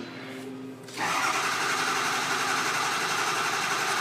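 Ford 6.0L Power Stroke V8 diesel being cranked over by its starter, starting about a second in and continuing steadily. Injection control pressure (ICP) in the high-pressure oil system is still building after the injection pressure regulator (IPR) was replaced to cure a low-ICP crank no-start.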